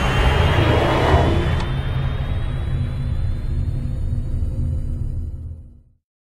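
Cinematic intro music and sound design: a low rumbling drone with a faint high tone rising slowly, fading out to silence near the end.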